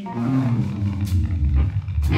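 Live blues-rock band in a slow minor blues, a loud passage dominated by heavy bass and organ low end, with drums and a cymbal crash about a second in.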